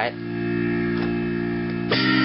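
Casio electronic keyboard holding a sustained chord, then a new chord struck near the end, as a chord change in the song's chorus.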